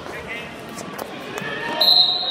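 A referee's whistle blown near the end, a loud, steady, shrill tone signalling the start of a wrestling bout, over the chatter of spectators in a gym.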